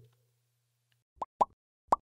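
Short cartoon-style pop sound effects of an animated like-and-subscribe end screen: three quick pops in the second half, each rising sharply in pitch, after near silence.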